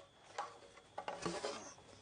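Faint light knocks and rubbing of a long wooden board being handled and tilted upright on a workbench, with a couple of small clicks about half a second and a second in.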